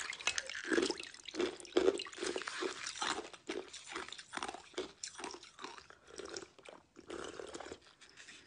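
Ball of ice being broken apart by hand, with dense irregular crackling and crunching and repeated short wet crunches about every half second.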